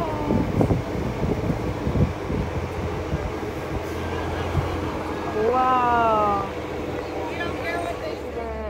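Riding aboard a tour bus: engine drone and road noise, with a few knocks in the first two seconds. Just past the middle, a drawn-out, slightly falling tone lasts about a second and is the loudest sound.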